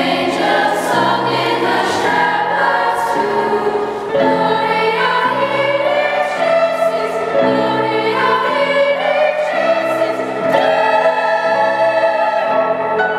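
Girls' choir singing slow, sustained notes in several parts, with a lower layer of held accompanying notes that change about once a second.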